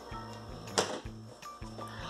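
Soft background music, with one sharp clack a little under a second in as the basket of a Mondial air fryer is released at its handle button and drawn out, and a few faint ticks near the end.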